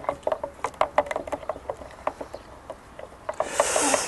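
A wooden spoon stirring sugar into horchata in a tall clear jug, knocking and scraping against the sides in quick, irregular clicks. A brief hiss near the end.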